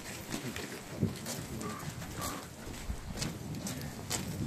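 Footsteps of a group of people walking on a paved road: irregular, overlapping steps, with low voices mixed in.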